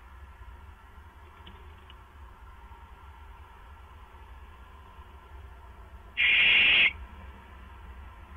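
Barn owl giving one harsh, hissing screech, under a second long, about six seconds in, over a faint steady low hum.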